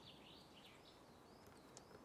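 Faint woodland ambience: small birds chirping in short calls that rise and fall in pitch, with a single soft tap near the end.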